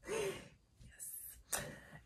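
A woman laughing softly under her breath: three short, breathy exhales.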